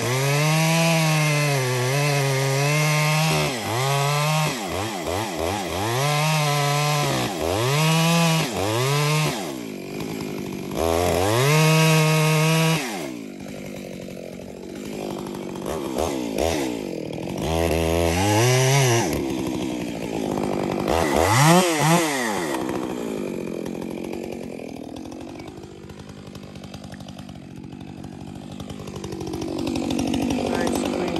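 Stihl chainsaw cutting a face notch into a large tree trunk. The engine runs at full throttle in repeated bursts of a second or two and drops back between them. In the second half it makes a few shorter surges, then runs at low revs, picking up again near the end.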